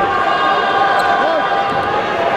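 Sports-hall sound during a wrestling bout: voices calling out in short rising-and-falling shouts over a steady background hum, with thuds on the mat.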